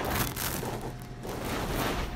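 Handling noise: a phone's microphone rustling and scraping against fabric while the phone is moved about, a dense crackly rubbing without pause.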